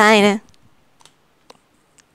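Faint, sharp clicks at a computer, three of them about half a second apart, as a presentation slide is advanced; a woman's voice ends about half a second in.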